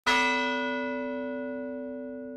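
A single struck musical note opening a logo sting, ringing on and slowly fading, its higher overtones dying away first.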